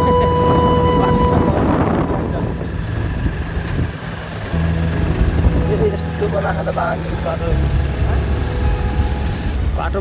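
Motorcycle engine running steadily at low speed on a dirt road, with a brief drop about four seconds in.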